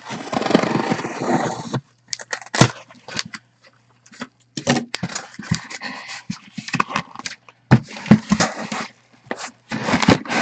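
A sealed cardboard case being opened by hand: a long scraping, tearing noise for about the first two seconds, then a run of rustles, scrapes and knocks as the cardboard flaps and boxes inside are handled.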